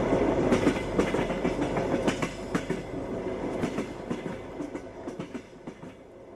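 A railway train running, its wheels clattering over the rails, fading out gradually.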